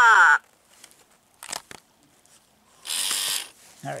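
The end of a laugh, then handling noise from an animatronic vampire prop's exposed plastic mechanism: a light click about a second and a half in, and a short mechanical rattle about three seconds in.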